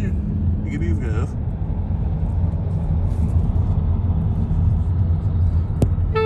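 Steady low rumble of road and engine noise inside a moving car's cabin at highway speed, with a brief voice-like sound about a second in.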